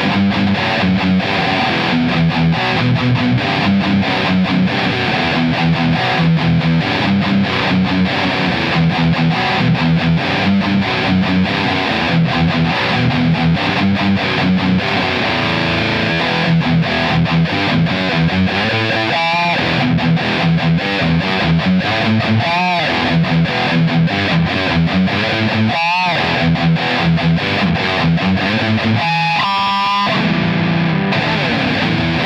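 A PRS S2 Singlecut Standard Satin electric guitar played through a distorted amp: a fast, rhythmic riff on the low strings. About four times in the second half, a held higher note wavers with vibrato.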